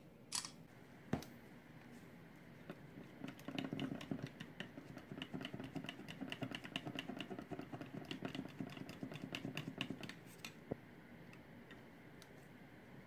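Glass test tubes and a thin rod clicking and tapping against each other and the plastic beaker of water as they are handled. The rapid, irregular clicks run for about eight seconds. Just before them come a short hiss and a single knock.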